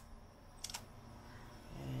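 UHER 4000 L portable reel-to-reel recorder's replacement motor running in fast forward with a low steady hum, the motor working properly. A sharp mechanical click comes at the start and a quick double click about two-thirds of a second in.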